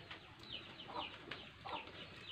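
Faint bird calls: a few short, falling chirps spread through the two seconds.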